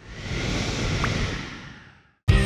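Cartoon sound effect of a rushing rumble of dust and debris stirring in a chasm in a cracked floor. The noise swells in over about half a second, holds, then fades out.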